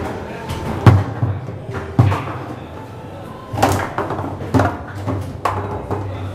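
Foosball table in play: several sharp knocks at irregular intervals as the ball is struck by the plastic players and the rods clack in the table, the loudest about a second in.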